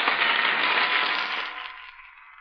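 Studio audience applauding on an old radio recording, the applause fading away over the last second.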